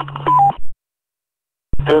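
Two-way radio audio: a short burst with two quick beep tones, the second lower than the first, over a steady hum, then silence. Near the end a radio keys up with a click and a man's voice comes in over the same hum.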